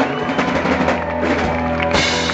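Live pop-punk band playing loud: distorted electric guitars, bass and a drum kit with frequent drum hits.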